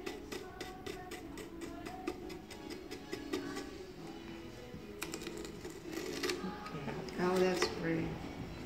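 Quick light taps of a stencil brush dabbing paint through a stencil onto a small wooden box, over background music; the tapping stops after about a second and a half, and brief voices come in near the end.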